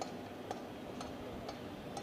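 Faint, regular ticking, about two ticks a second, over low background hiss.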